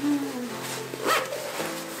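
Background music with sustained, steady chords. A brief rustle of nylon sleeping-bag fabric comes about a second in, as a person shifts inside a down bag.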